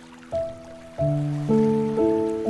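Slow, gentle relaxation music on piano: a held chord fades, then new notes are struck about a third of a second in, at one second and at a second and a half, each ringing on.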